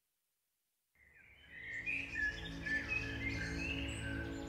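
Silence, then about a second in, birds chirping over a soft, low, steady tone.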